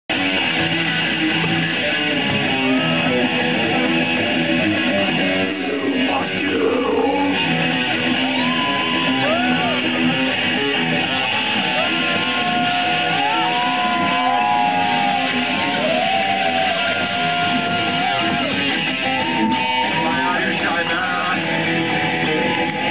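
Live rock band playing loud, distorted electric guitars, bass and drums, with a lead line that slides and bends in pitch.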